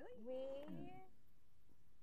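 Speech only: a voice saying a drawn-out, rising "We?" in the first second, then quiet talk.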